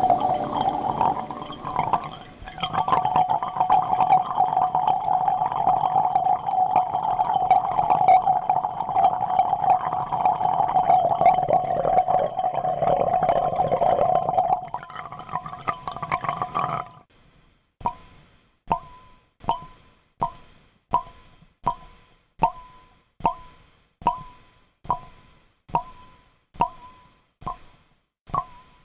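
Experimental electronic noise piece. A dense, crackling drone with steady tones stops abruptly a little past halfway and gives way to a regular train of short pulses, about four every three seconds. Each pulse is a sharp click with a brief ringing tone that fades out.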